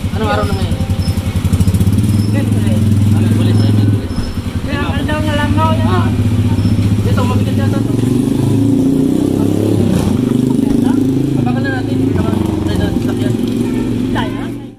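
A motorcycle engine running close by with fast, even firing pulses. Its pitch drops about four seconds in and rises and falls through the second half, with people talking over it.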